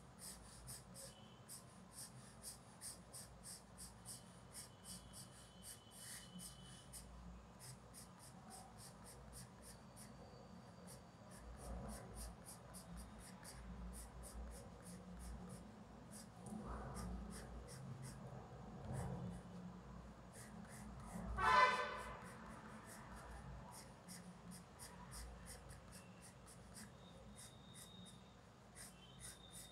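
Coloured pencil scratching on paper in quick, repeated short strokes as fine lines are sketched in. About 21 seconds in, a brief, louder pitched sound rises over the scratching.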